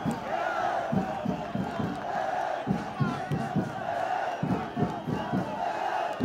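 A group of men chanting and singing together in a victory celebration, over a steady rhythmic beat of a few strokes a second.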